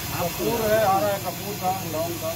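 A man's voice, indistinct, over a steady background hiss.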